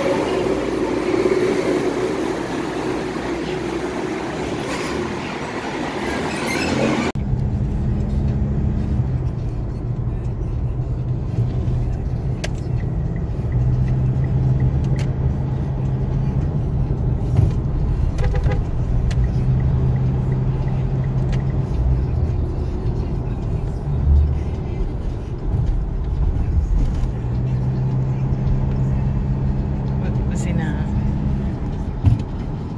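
Inside a car moving in traffic: a steady low drone of engine and road noise, with a few faint clicks. Before it, for the first several seconds, there is a brighter, busier background of voices and ambience.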